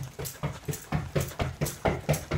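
A person panting rapidly in short, voiced breaths, about five a second.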